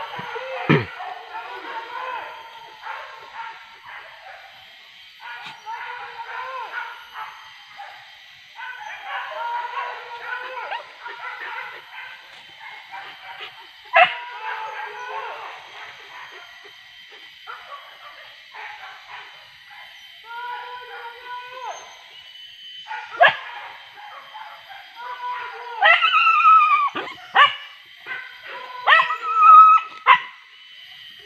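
Hunting dogs barking and yelping in short bursts on a wild boar hunt, with a run of loud, falling yelps near the end.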